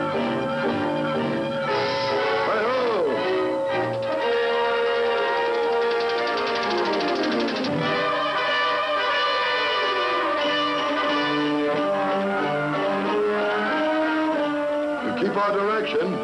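Orchestral cartoon score led by brass, with a few swooping glides in pitch.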